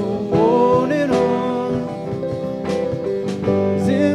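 Live worship band playing a song, with guitar, keyboard and a sung melody that glides up between notes about a second in.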